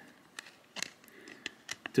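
A few light clicks and soft rustles of thin plastic as a trading card in a soft sleeve is handled against a rigid clear plastic card holder.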